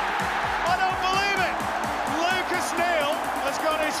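A match commentator's excited shouting over a music track with a quick beat.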